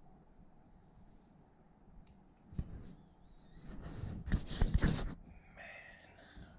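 Quiet room tone, then a click a little before halfway, followed by a loud, close-up burst of rustling handling noise on the microphone lasting about a second and a half.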